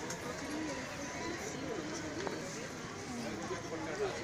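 Faint, indistinct voices of people talking in the background, with no clear words.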